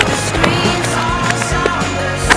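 Skateboard rolling on concrete, heard over a music soundtrack.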